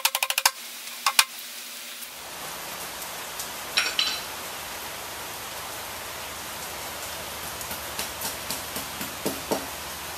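A quick run of sharp hammer taps on a wooden pallet, then two more blows about a second in. After that a steady background hiss runs on, and near the end a hammer taps lightly about three times a second on the concrete floor, straightening pulled pallet nails for reuse.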